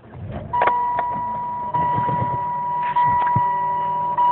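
A 2004 Saturn Vue's 2.2-litre Ecotec four-cylinder cranking and starting, with a few clicks. About half a second in, a steady high dashboard warning chime begins and sounds in long tones that repeat about every 1.2 seconds.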